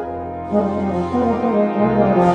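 Euphonium playing a low melodic passage, a run of notes that changes pitch several times from about half a second in, over a sustained deep bass note from the accompaniment.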